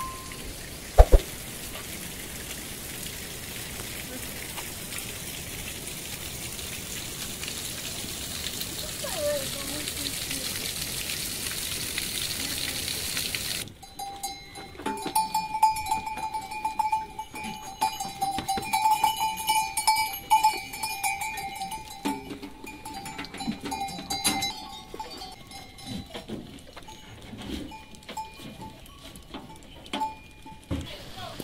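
Steady rain falling, its hiss slowly growing louder, for about the first half. Then livestock bells ringing on goats and sheep crowding a feed trough, with small knocks and rustles of feeding.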